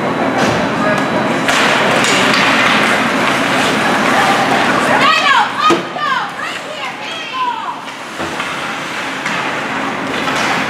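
Ice hockey rink game noise: indistinct voices of spectators and players carrying through the arena, with skates scraping and sticks and puck clacking on the ice. The clacks are sharpest about halfway through.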